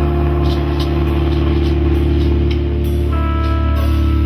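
Electric guitar and bass chord ringing out loud through stacked valve amplifiers after the band's final hit, a steady held low drone. About three seconds in, a higher steady tone joins it.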